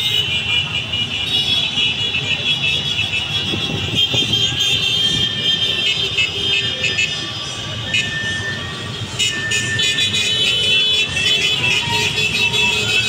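Motorcycles and cars passing in a street parade, with horns sounding almost without a break over the rumble of the traffic.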